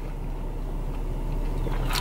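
A car idling, a steady low hum heard from inside the cabin.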